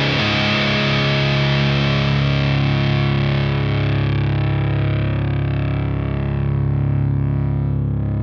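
Electric guitar (a Mexican-made Fender Telecaster) played through a JPTR FX Jive Reel Saturator drive pedal, giving a distorted, fuzzy tone. A chord is left to ring out, its top end slowly fading.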